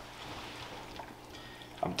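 Faint, wet stirring of ceviche (diced fish, fruit and vegetables in lime juice) with a spoon in a bowl.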